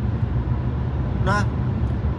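Steady low rumble of a car's cabin, the engine and road noise inside the car, with one short spoken syllable about a second and a half in.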